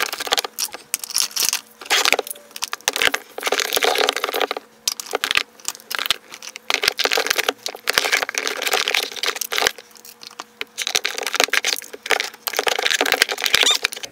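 Plastic skincare tubes and jars being handled and packed into plastic organiser bins in a drawer: a run of irregular clacks, taps and plastic rustling.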